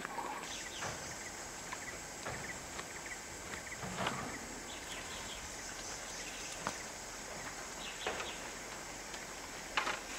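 Faint outdoor forest ambience: a steady hiss with scattered faint bird chirps and a few soft knocks.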